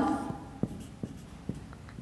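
Marker pen writing on a whiteboard: quiet, short strokes and a few sharp taps as a formula is written out.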